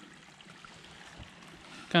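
Faint, steady trickle of a small, shallow creek running over rocks.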